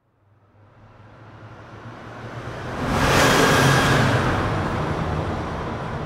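A vehicle passing by: a rushing noise over a low hum, building slowly to a peak about three seconds in and then fading gradually.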